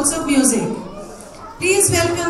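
Speech only: a woman speaking into a handheld microphone, with a short pause about halfway through.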